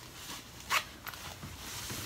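Soft rustling and scuffing as a thong sandal is handled on a raised foot and the foot is set down on carpet, with one louder short scrape about three-quarters of a second in.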